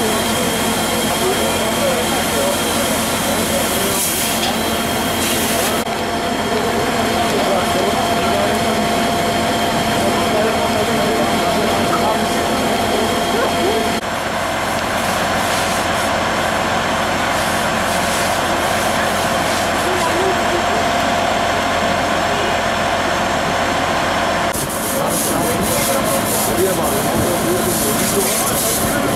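Fire engine running steadily at a fire scene, with indistinct voices mixed in; the sound changes abruptly three times.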